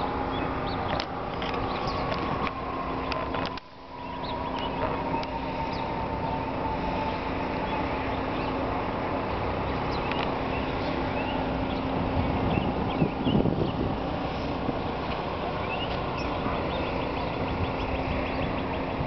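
Steady city traffic rumble with small birds chirping over it. The sound drops out briefly about three and a half seconds in.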